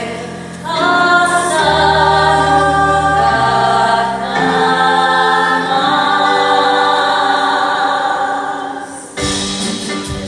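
A stage-musical ensemble sings long held choral chords over backing music. About nine seconds in, the chord cuts off and guitar strumming begins.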